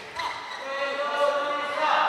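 A single long, held vocal shout, steady in pitch and lasting over a second.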